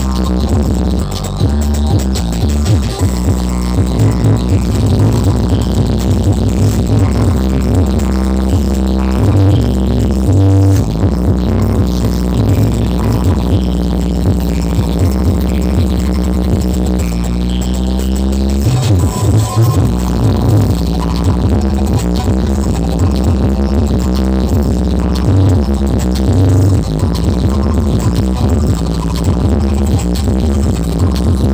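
Electronic dance music with very heavy bass, played loud through a huge stack of outdoor sound-system speaker cabinets. The bass drops out briefly about ten and nineteen seconds in. The bass is strong enough to push the phone's microphone into distortion.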